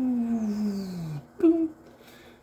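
A man's voice making a long, smoothly falling vocal tone, like the sound of a bullet in flight, followed about a second and a half in by one short sharp vocal burst, as if the round striking the mile-distant target.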